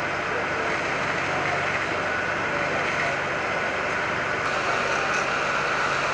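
Fire engine running steadily, a constant engine hum under a steady rushing noise, with faint voices now and then.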